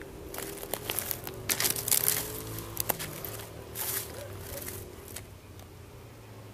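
Irregular rustling and crackling, a cluster of sharp bursts scattered through the first five seconds and dying away near the end, over a faint steady low hum.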